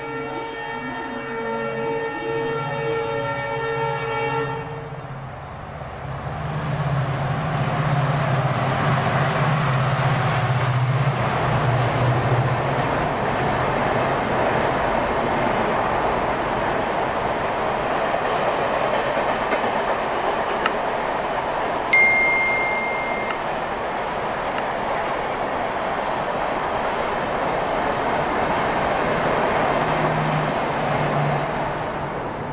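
A train horn sounds for about four and a half seconds, then a passing train makes a loud, steady rumble and rattle of wheels on rails for the rest of the time. A short high whistle cuts in about three quarters of the way through.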